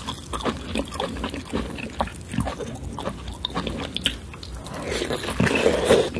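Close-miked wet, messy chewing and mouth sounds of eating lobster: a quick string of small smacks and clicks, louder and denser near the end.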